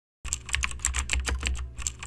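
Typing sound effect: a quick run of computer keyboard key clicks, about eight to ten a second over a low hum, starting about a quarter second in.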